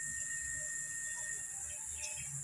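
Insects in the field chirring: a steady high-pitched drone with a thinner steady tone beneath it, unbroken throughout.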